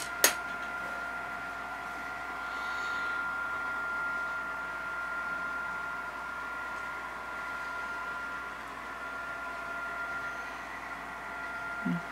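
A steady machine hum with a thin, high whine held on one pitch throughout, and a single sharp click just after the start.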